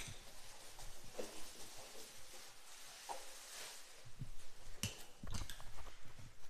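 Faint rustling and crinkling of plastic wrap being pulled off a new oven, with a few sharp handling clicks near the end.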